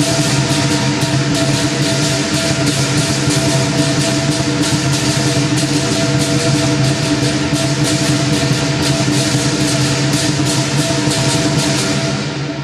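Lion dance percussion: a drum with cymbals and gong played fast, many strikes a second over a steady metallic ring.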